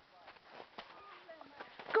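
Faint distant voices with a few soft crunching footsteps in snow, ending in a shouted "Go".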